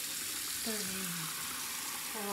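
Water from a bathroom tap running steadily into a sink, a continuous even hiss.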